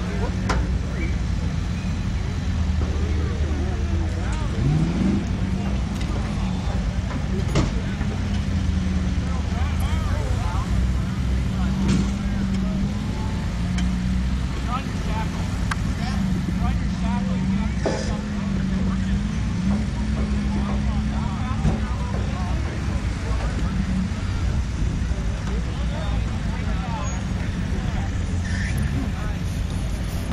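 Jeep Wrangler engine running at low revs as it crawls slowly over logs and dirt mounds, its note wavering a little with the throttle, over a steady low rumble. Background crowd voices, with a few short knocks.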